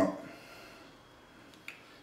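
Quiet room tone after the last word fades, with a single short click near the end.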